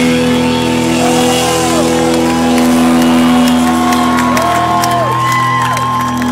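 Live band's keyboard synthesizer holding a steady final chord after the drums and guitar have stopped, with the crowd cheering and whooping over it in repeated rising-and-falling calls and scattered claps.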